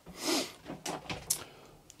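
A soft breath through the nose, then a few light clicks and knocks.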